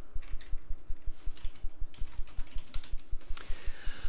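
Typing on a computer keyboard: a fast, even run of key clicks, each with a dull low knock, as a word is typed.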